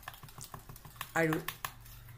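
Metal spoon clicking rapidly and unevenly against the side of a bowl as an egg, sugar and oil mixture is beaten by hand.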